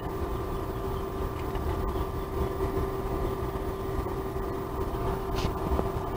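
Steady mechanical hum with a constant tone, like a room fan or air-conditioning unit running.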